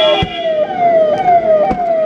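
Convoy escort vehicle's siren wailing in a quick repeating pattern: each cycle falls in pitch, then snaps back up, about two and a half times a second. A sharp knock cuts in about three-quarters of the way through.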